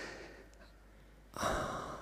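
A man's short, noisy breath into a close microphone about one and a half seconds in, a sigh or inhale between sentences. Before it, the echo of his last words dies away in a large reverberant room to near silence.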